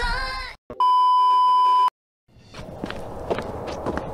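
A single steady electronic bleep, one pure tone lasting about a second, of the kind used to censor words on TV. After a brief silence comes low room noise with scattered clicks.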